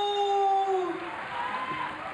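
Ring announcer's drawn-out shout of a wrestler's name, the final vowel held on one steady pitch and then dropping away about a second in. Fainter crowd noise follows.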